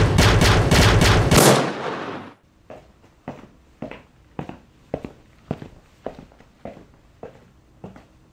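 A loud edited-in transition sound effect, a dense crashing burst lasting about two seconds that cuts off, followed by a steady series of sharp percussive hits, a little under two a second.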